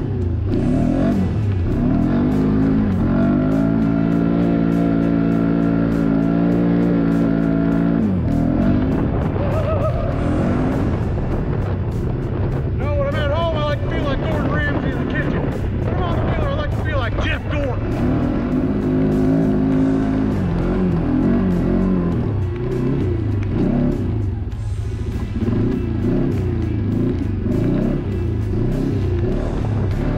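ATV engine running and revving on a dirt trail, its pitch climbing, holding steady for a few seconds, then dropping off, twice. Music with a voice plays over it in the middle.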